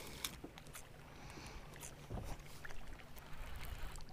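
Faint small waves lapping against a drifting boat on open water, with a few small clicks.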